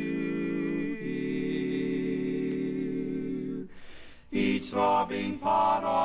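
Barbershop quartet singing a cappella in four-part close harmony: one long held chord for about three and a half seconds, a brief pause, then a run of short, clipped chords.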